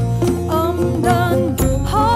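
Song in Khasi: a woman's voice sings a melody over instrumental accompaniment with a steady beat.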